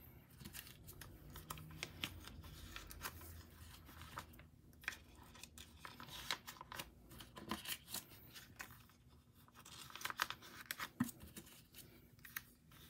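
Faint, intermittent crinkling and rustling of clear plastic binder sleeves as filler cards are slid into the pockets, with scattered soft clicks.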